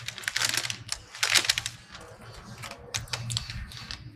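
A paper takeaway bag rustling and crinkling as a snack is taken out of it. There are two strong bursts of crackling in the first second and a half, then lighter, scattered crackles.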